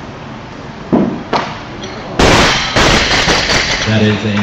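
A loaded Olympic barbell with bumper plates dropped from overhead onto the wooden lifting platform: a loud crash about two seconds in, followed by a second of rattling bounces. A short shout comes about a second in, before the drop.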